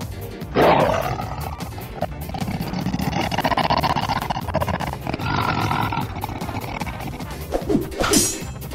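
A creature roar sound effect for a cartoon dragon, starting suddenly about half a second in and lasting several seconds, over background music with a steady beat.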